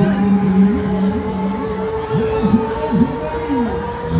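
Loud fairground ride music from the sound system of a spinning Break Dance ride, with steady held tones, pitch glides and voices mixed over it; a low held tone drops out about halfway through.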